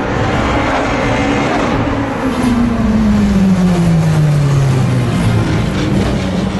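Open-wheel sport-prototype race car's engine passing close by and pulling away, its engine note falling steadily in pitch over a few seconds.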